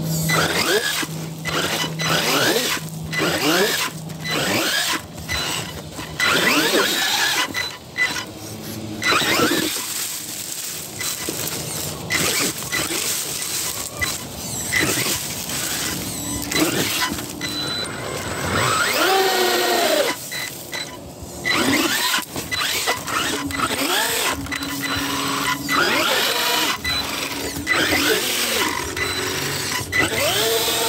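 Axial Ryft RBX10 RC rock bouncer's electric motor and drivetrain whining in short spurts, the pitch rising and falling as the throttle is worked, with repeated knocks and clatter of the truck against rock.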